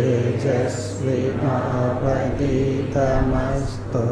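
A man's voice chanting a Sanskrit verse in a slow, melodic recitation, holding notes and gliding between them.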